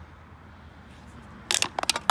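Low background hum, then near the end a quick cluster of clicks and knocks as an aluminium root beer can is handled and pushed into a hard shoe-shaped novelty holder on a wooden table.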